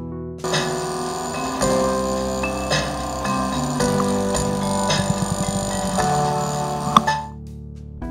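A short passage of music with percussion, played through a hard drive converted into a speaker, its voice coil moving the heads against a plastic-film cone. It starts about half a second in and stops sharply near the seven-second mark, leaving quieter background music.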